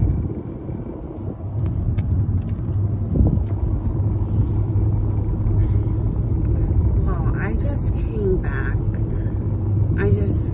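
Road noise inside a moving car's cabin: a steady low rumble of engine and tyres, growing louder about a second and a half in.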